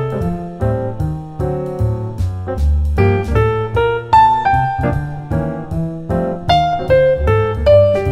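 Jazz piano playing a short melodic motif, then repeating its rhythm with different notes displaced by one beat, over a steady low bass line.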